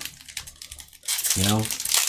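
Foil booster-pack wrapper crinkling as it is handled and torn open, starting about a second in.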